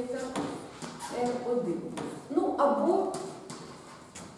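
A woman speaking quietly in a large room, with several short taps of chalk on a blackboard as she writes.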